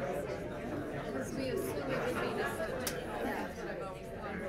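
Many people talking at once in small table groups: a steady hubbub of overlapping conversation. A single brief click sounds about three seconds in.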